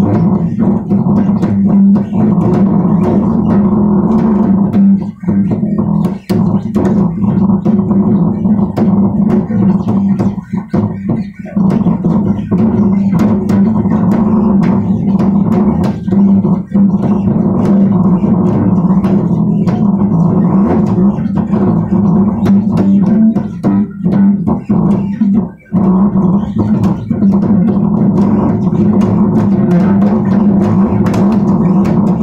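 Bass guitar played continuously in a steady run of low notes, with a few brief breaks about five, eleven and twenty-five seconds in.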